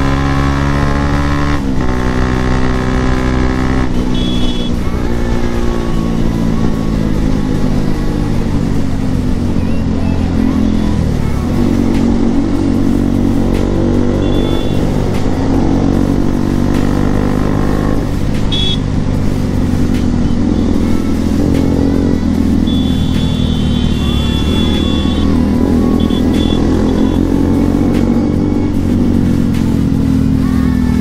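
Bajaj Pulsar NS200's single-cylinder engine heard from the rider's seat while riding in traffic. Its pitch drops suddenly at a gear change about two seconds in, then rises and falls over and over as the throttle is opened and eased. A few brief high tones cut in over it.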